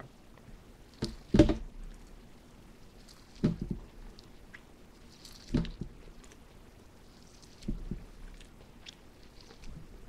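A man chewing a mouthful of deep-fried corn on the cob close to the microphone: a few short, separate chewing sounds about every two seconds, with small mouth clicks between. The corn has no crunch.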